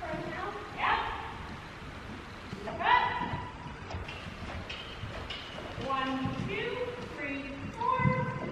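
Horse cantering on a sand arena, its hoofbeats a soft, uneven drumming, with a voice calling out a few short times.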